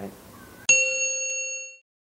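A single bright bell ding, struck sharply about a third of the way in, rings for about a second and then cuts off. It serves as a transition sound effect.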